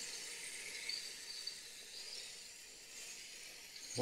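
Faint, steady hiss of water from a tank-rinser wand on a garden hose spraying inside an Atwood RV water heater tank and running out of the drain opening, flushing out white mineral deposits.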